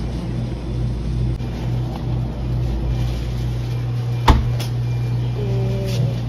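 Steady low hum of supermarket refrigerated display cases, with one sharp knock about four seconds in and a lighter click just after.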